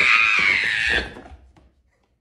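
A woman's loud, high-pitched scream of fright at a jump scare, lasting about a second and falling slightly in pitch before it breaks off.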